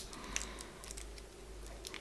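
Quiet room tone between sentences, with a steady low hum and one faint click about a third of a second in.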